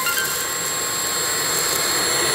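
A Tefal 8.60 Aqua cordless stick vacuum, with a brushless (BLDC) motor and a combined suction and wet-mop roller head, running steadily as it sucks up powder from a marble floor: an even rushing sound with a steady high whine.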